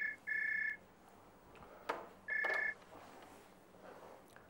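Telephone ring tone: short, steady electronic double-pitched bursts, two in quick succession at the start and a third about two and a half seconds in, with a sharp click just before the third.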